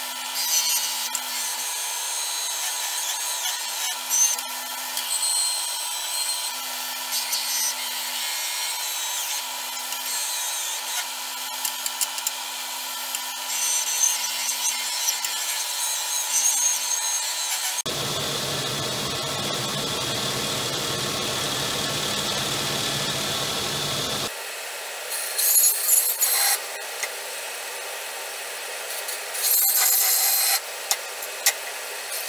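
Record Power BDS250 belt and disc sander running with a steady motor hum, a wooden block pressed against its sanding disc in repeated bursts of scratchy hiss. For about six seconds past the middle, a deeper, rougher machine noise takes over.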